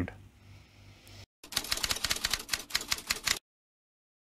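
Typewriter typing sound effect: a quick, dense run of key clicks lasting about two seconds, starting about a second and a half in, with dead silence before and after it.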